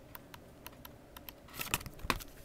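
Faint handling noise: scattered light clicks and taps of fingers on the paper and plastic of a DVD box set's photo book and cases, close to the microphone, with a quick flurry of them near the end.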